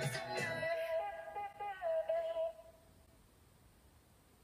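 Closing bars of a K-pop song: the beat and bass stop less than a second in, leaving a held sung note that fades out at about three seconds, then only faint room tone.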